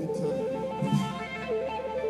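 Live rock band music: an electric guitar picking a short repeated melodic figure over the band, as a new song gets under way.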